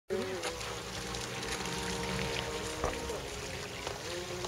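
Radio-controlled model speed boat's electric motor whining steadily as the boat runs fast across the water, the pitch dropping slightly about three seconds in.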